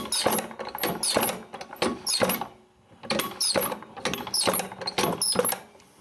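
Moving parts of an old painted iron mechanism clicking, clattering and squeaking as it is worked, in quick repeated bursts with a short pause about halfway through.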